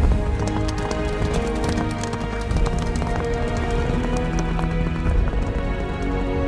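Background music with the hoofbeats of a galloping horse mixed over it, the hoof strikes thickest in the first half.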